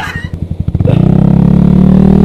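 Yamaha R15 V3's single-cylinder engine pulsing unevenly at low revs for about a second, then picking up into a louder, steady running note.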